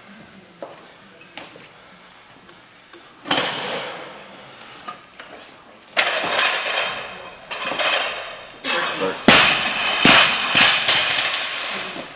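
Steel barbell loaded with bumper plates to 303 lb, lifted in a clean and jerk. A few faint knocks come early. About six seconds in there is a loud metallic rattle of plates and bar as it is caught at the shoulders. A little after nine seconds comes the heaviest impact as the bar is dropped onto the platform, followed by further rattling knocks as it settles.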